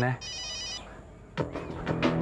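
Mobile phone ringing: a rapid, high electronic trill that stops less than a second in.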